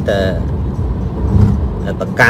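Steady low rumble of a car in motion, heard from inside the cabin, filling a pause in a man's talk; his voice is heard briefly at the very start.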